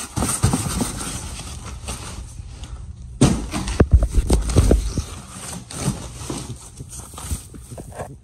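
A cardboard shipping box being opened by hand and its foam wrapping sheet pulled back: rustling and scraping with scattered knocks, and a cluster of louder thumps around the middle.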